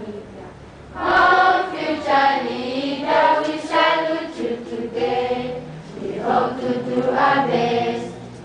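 A large assembly of secondary-school students singing the school anthem together as a crowd choir. After a short lull between lines, the singing comes in strongly about a second in and carries on in sustained sung phrases.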